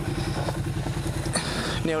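Triumph Street Twin's 900 cc parallel-twin engine running at low, steady revs as the motorcycle rolls slowly across grass.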